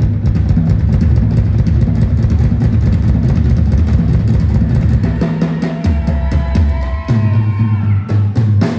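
A rock drummer's drum kit soloing live through a concert PA: rapid bass drum strokes run almost without a break under fast snare and tom hits. A few thin held tones come in near the end.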